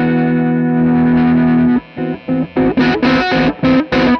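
Harmony Rebel electric guitar played with distortion on its neck gold-foil humbucker: a held chord rings for nearly two seconds and is cut short, then a run of short, choppy picked notes.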